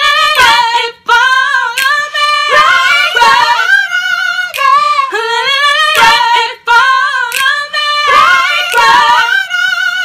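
A single high voice singing without accompaniment, holding long wavering notes with vibrato, with two brief breaks for breath.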